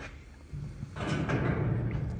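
Paint booth door being opened and passed through: a low rumbling scrape that starts about half a second in and grows louder, with a few clicks.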